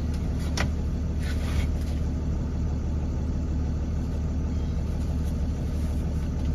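Truck engine idling, heard from inside the cab as a steady low hum. A single sharp click comes about half a second in.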